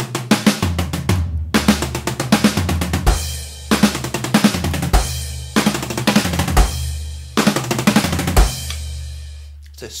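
Electronic drum kit playing a very fast fill of sixteenth-note triplets, two snare strokes and then a run on the low tom, over and over as one flow of notes. Each run ends on a deep bass-drum hit, and the last one rings out and dies away near the end.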